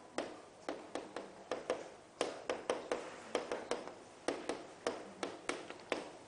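Chalk writing on a chalkboard: an irregular run of quick, sharp taps, about four a second, as each stroke strikes the board.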